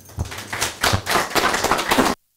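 Audience applauding, a dense patter of hand claps that grows louder about half a second in.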